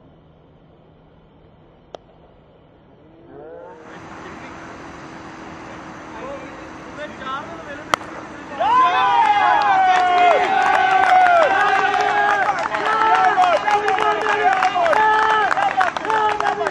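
A single sharp crack of a cricket bat striking the ball about eight seconds in, after a low murmur of voices. At once it is followed by loud, overlapping shouting and cheering from many voices as the shot goes for six.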